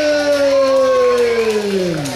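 A ring announcer's amplified voice holding one long, drawn-out call of a fighter's name, the pitch slowly sinking as it trails off near the end.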